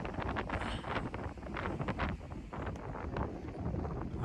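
Strong wind buffeting the microphone in uneven gusts, with a low rumble and short crackles.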